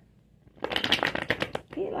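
A deck of tarot cards being shuffled: a quick run of crisp card flicks lasting about a second, starting about half a second in.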